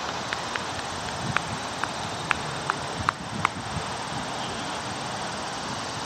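A run of about ten sharp, irregular clicks over the first three and a half seconds, over a steady background noise.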